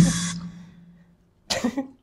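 A person coughing once: a sharp start and a short rough burst that fades away within about a second. A second brief vocal sound follows about one and a half seconds in.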